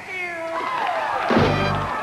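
Live blues band playing, led by an electric guitar whose notes bend and slide in pitch, over bass and drums.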